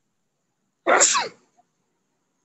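A person coughing once about a second in: a single sudden, loud burst of breath lasting about half a second.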